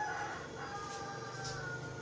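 A rooster crowing faintly in the background: one long held call with a slowly falling pitch.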